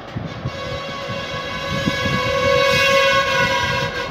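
A long, steady horn tone begins about half a second in and grows louder after about two seconds, over a low rumble.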